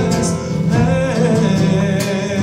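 A live zamba performance: acoustic guitar strumming with a man singing into a microphone, amplified through the stage speakers.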